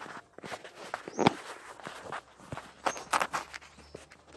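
Handling noise from the recording phone as it is picked up and moved: irregular knocks, rubs and rustles. There is a sharp knock about a second in and a cluster of knocks around three seconds.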